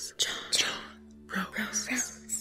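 Several whispering voices hissing indistinct words in short bursts, over a low steady music drone that comes in partway through.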